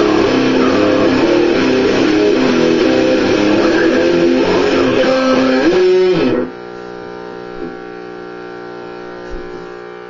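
Electric guitar playing a loud, dense riff; about six seconds in it slides down in pitch and stops abruptly, leaving a much quieter steady ringing tone for the rest.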